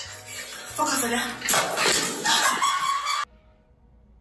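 Soundtrack of a short TikTok clip: a voice over music, then a sudden cut to near silence about three seconds in.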